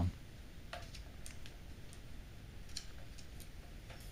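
Small screwdriver driving a locking screw into a plastic mini-PC case: a handful of faint, irregular clicks and ticks as the screw is turned.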